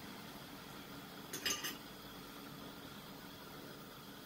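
Kitchenware clinking against a cooking pot: a quick run of three or four sharp clinks about a second and a half in.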